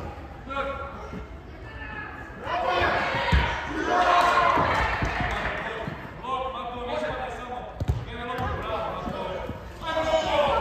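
Voices calling and shouting during an indoor football match in a large hall, loudest from about two and a half to six seconds in. A few thuds of the ball being kicked come through, one about three seconds in and one near eight seconds.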